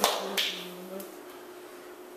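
Two sharp smacks about half a second apart, then a fainter tap about a second in, from hands striking each other during signing, over a faint steady hum.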